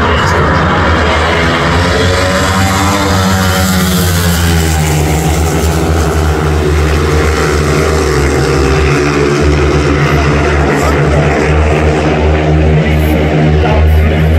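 Pack of long-track speedway bikes racing at full throttle, their single-cylinder engines running together in a loud, steady drone. The pitch sweeps up and then down as the pack passes a few seconds in.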